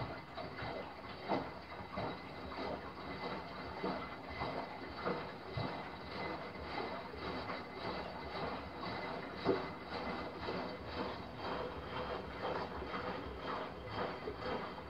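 Miele Softtronic W5820 front-loading washing machine mid-wash: water sloshing and splashing irregularly in the drum as it turns, over a faint steady machine hum.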